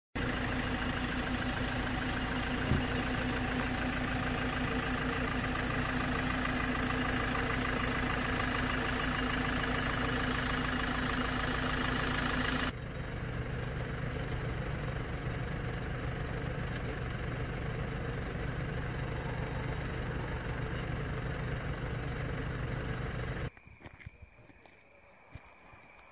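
A van's engine idling steadily close by. About halfway through the sound cuts abruptly to a lower, quieter engine hum, which stops a few seconds before the end, leaving only faint background.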